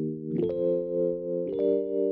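Rhodes electric piano sound from the Addictive Keys software instrument, playing sustained chords held on the sustain pedal. The chord changes twice, about half a second in and again about a second and a half in.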